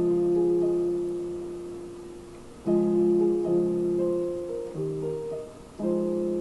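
Yamaha digital keyboard on a piano voice playing sustained chords in D-flat major. A chord is struck at the start and left to ring and fade. A new chord comes about two and a half seconds in with a few notes moving over it, and another just before the end.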